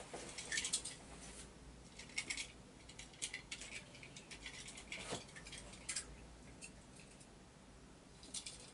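Faint scattered clicks and rustles of small hard objects being handled, coming in short clusters, busiest in the first few seconds and thinning out near the end.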